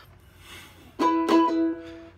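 Ukulele strummed twice about a second in, playing the E chord, which is very hard to do on the ukulele. The chord is left ringing.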